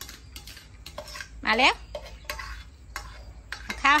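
Metal spoon scraping and clinking against a stainless steel bowl as cooked rice is scooped out, in a run of short, irregular scrapes and clicks.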